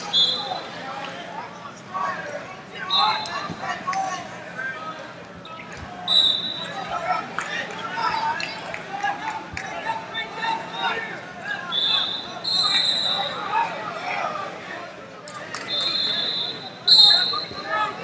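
Several short, high referee whistle blasts from wrestling mats around the hall, over a steady background of indistinct shouting and chatter from coaches and spectators in a large, echoing gym.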